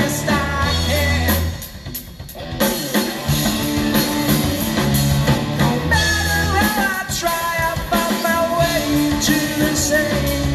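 Live rock band playing, with electric guitars, bass, drum kit and a lead singer. About a second and a half in the band drops out briefly, with a few drum hits, then comes back in full.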